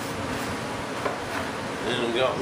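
Steady workshop background hiss with a few faint light taps as a composite tank part and tools are handled on a workbench.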